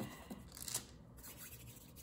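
Faint rustling and rubbing of hands pressing play dough snakes on parchment paper, with a short scratchy rustle a little under a second in.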